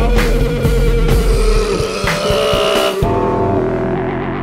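Live experimental punk band playing loud: drum kit hits over distorted guitar. About three seconds in, the drums and high end cut off suddenly, leaving a sustained low, distorted drone.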